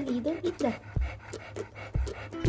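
Chow chow puppy vocalising: a short, wavering whine in the first second, then quiet with a few faint clicks.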